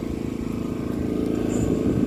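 Small 2 kVA petrol inverter generator engine running steadily in eco mode with no load yet connected.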